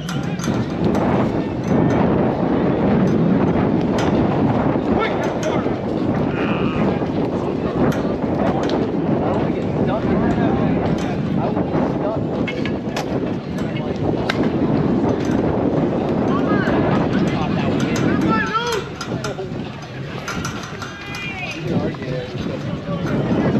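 Wind buffeting the microphone, with players' voices and shouts; the wind noise eases and calls become clearer in the last few seconds.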